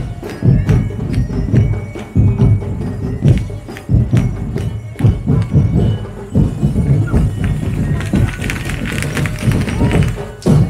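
Festival street-dance music driven by heavy drums, with a steady beat about every half second and sharp clicking percussion over it.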